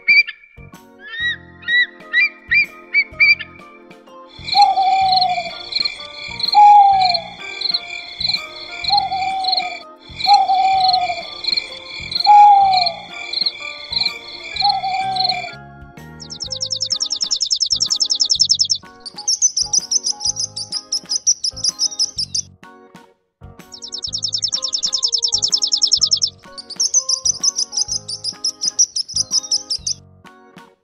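Recorded bird calls over cheerful children's background music. In the first half come repeated short chirps and falling whistles, given as an eagle's cry. From about halfway comes a sparrow's rapid, high chirping in four long bursts.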